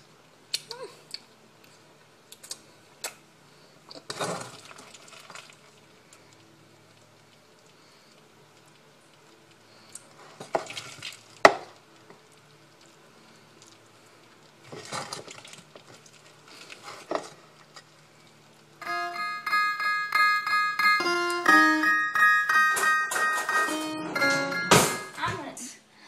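A metal spoon scraping and clinking against a stainless steel pot and a ceramic bowl while macaroni and cheese is served: scattered short knocks, one sharper clink about halfway through. For the last several seconds, music with held, stepping notes comes in and is louder.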